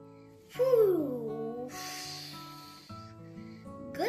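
Gentle background music with steady held notes. About half a second in, a loud drawn-out voice-like sound slides down in pitch for about a second, followed by a soft hissing whoosh.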